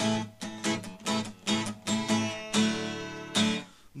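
Acoustic guitar strummed in a steady rhythm: a quick run of chord strokes, then two longer ringing chords, and a brief hush near the end.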